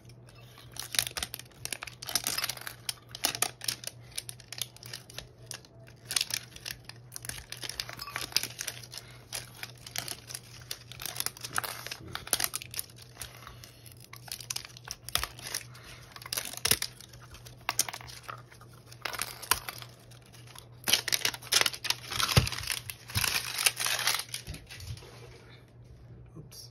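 Plastic shrink wrap crinkling and tearing as it is peeled off a metal Poké Ball tin, with irregular sharp clicks and knocks from handling the tin. The crackling is busiest near the end.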